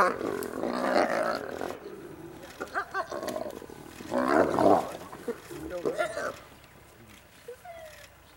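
Spotted hyenas calling out as they jostle together over a carcass, in a few loud vocal outbursts: one at the start, the loudest about four seconds in, and a shorter one about six seconds in.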